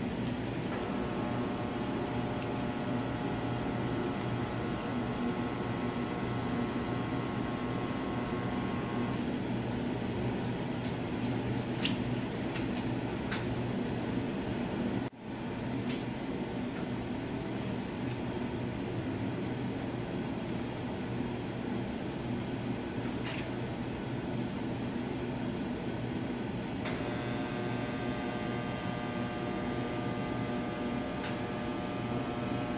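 Steady hum and air noise of running lab equipment around a scanning electron microscope, with a higher steady tone that stops about nine seconds in and comes back near the end. A few faint clicks come from handling the microscope's sample-exchange airlock.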